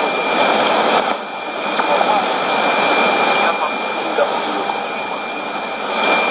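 Weak shortwave AM broadcast of Voice of Nigeria in Swahili on 11770 kHz: a voice barely audible under heavy hiss and static, with a thin steady high whistle running through it.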